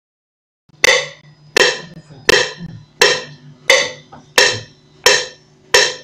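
A single percussion sound played back from music software over a small computer speaker, struck eight times on a steady beat about 0.7 s apart, after a moment of silence, over a faint steady low hum. It is one percussion part of a rumba beat being built in the sequencer.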